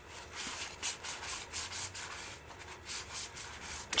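Cardboard baseball cards sliding against one another as a stack is thumbed through card by card: a series of short, dry rubbing swishes, about two a second.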